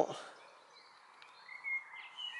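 Quiet outdoor background with faint, thin, wavering high calls from a distant animal, most noticeable near the end.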